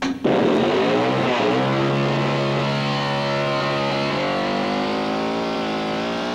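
A trailer soundtrack drone: a loud sudden onset, then a low, steady droning tone with a rich stack of overtones. It slides up in pitch about a second in, then holds, sinking slowly lower toward the end.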